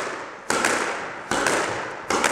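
Squash ball volleyed in a figure-of-eight drill: sharp hits of racket on ball and ball on the court walls, about three-quarters of a second apart, each ringing out in the court.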